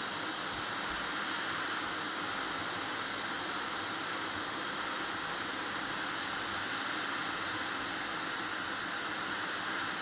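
Hot air rework station blowing a steady, even hiss of hot air onto a circuit board to heat a small surface-mount part for removal.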